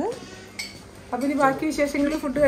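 Plates and cutlery clinking faintly on a dining table, then a voice from about a second in.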